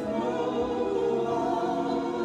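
A woman singing a gospel song into a microphone, over steady held accompaniment chords.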